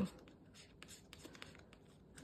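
Faint, quick scratching of a thin tool rubbing the coating off a paper scratch-off card.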